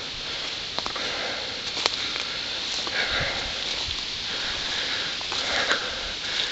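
Rustling and footsteps through leafy forest undergrowth while walking, with a few faint snaps and soft thumps and the walker's breathing close to the microphone.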